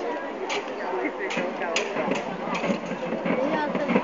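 Crowd chatter with half a dozen sharp, irregular clacks of sword blades striking one another in a duel.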